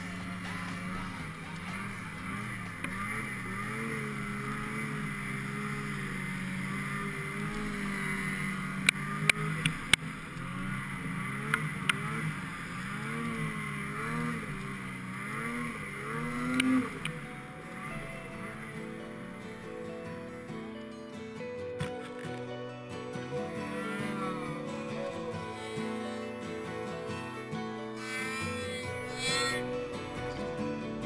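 Music playing, with a Ski-Doo Summit 800R snowmobile's two-stroke engine rising and falling in pitch underneath for roughly the first seventeen seconds, ending on a sharp rev. A few sharp clicks stand out between about nine and twelve seconds in.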